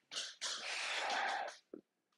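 A man's breathy exhale lasting about a second, with no voice in it, after a shorter breath at the start.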